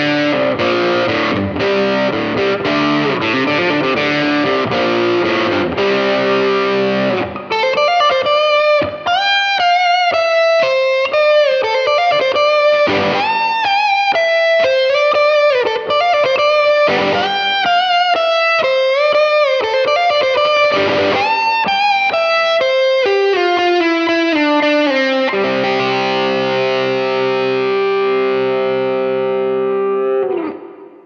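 Overdriven electric guitar, a Fender Stratocaster partscaster played through effects pedals: chords for about seven seconds, then a single-note lead line with string bends, ending on a held chord that rings for about five seconds, showing off the guitar's long sustain.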